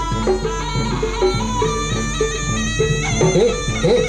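Jaranan ensemble music: a shrill double-reed slompret playing over a steady repeating pattern of struck notes and drums, about three a second. Near the end a man shouts "hey".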